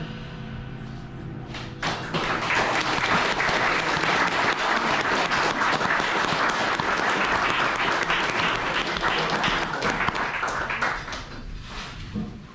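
The jazz trio's last chord rings out for about two seconds, then an audience applauds loudly for about nine seconds, dying away near the end.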